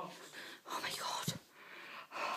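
A person whispering quietly, with breathy, unvoiced sounds and no clearly spoken words.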